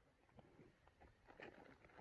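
Near silence: faint outdoor background with a few small handling ticks.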